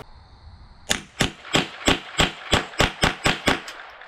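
AR-style semi-automatic rifle fired rapidly: about a dozen sharp shots, roughly four a second, starting about a second in.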